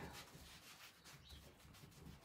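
Faint rubbing of a wad of cling film over glued rice paper as it is smoothed flat on a painted wooden cabinet door.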